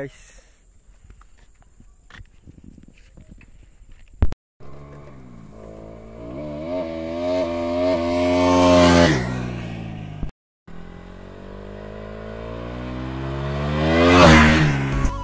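A Bajaj Pulsar motorcycle riding toward and past close by, twice. Each time the engine note climbs in pitch and grows louder, ending in a loud rush as it passes: the first pass comes about nine seconds in, the second at the very end. The first few seconds are quiet.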